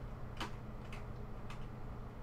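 Computer keyboard keys being pressed: a few separate clicks about half a second apart.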